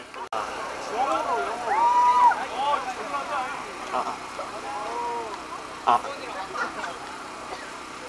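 Indistinct voices of people talking nearby, unclear and off-mic. Two sharp knocks come about four and six seconds in.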